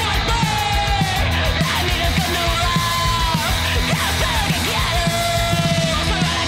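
Punk rock song with a yelled lead vocal over electric guitars, bass and drums.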